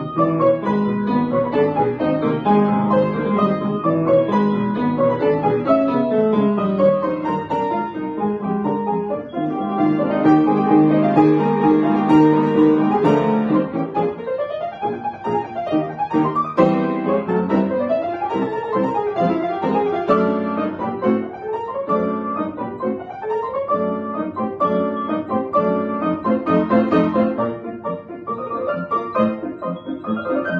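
Upright piano played four hands, a classical-style piece with a moving melody over a steady accompaniment; from about halfway through the notes become shorter and more rhythmic.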